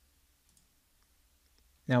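Near silence with a few faint computer mouse clicks, then a man's voice begins just before the end.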